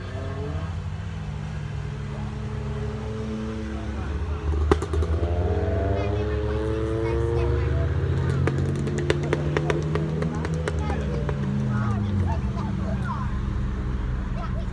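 Cars driving past on a race track one after another, each engine note rising and then falling in pitch as it goes by, over a steady low rumble.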